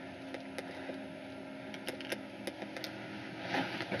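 Faint steady low hum under an even hiss, with a few small soft clicks: quiet room tone.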